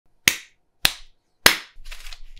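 Three sharp hand claps, evenly spaced a little over half a second apart, each with a short tail of room echo, then a softer rustling noise near the end.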